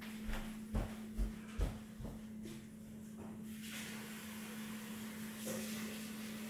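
Footsteps walking away across a wooden floor, about five soft thumps at around two a second in the first two seconds. After that there is only a steady low hum with a faint hiss.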